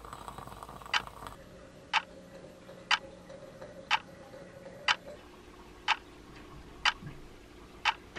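A clock ticking steadily, one sharp tick a second, eight ticks in all.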